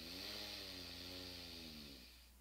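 A woman exhaling slowly through one nostril, the other pressed shut, as part of alternate-nostril yoga breathing. The exhale carries a faint hum whose pitch rises slightly and then sinks, over a soft hiss of breath.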